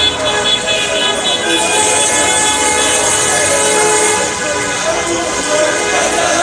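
A horn held in long steady blasts over the noise of a crowd of voices in a busy street.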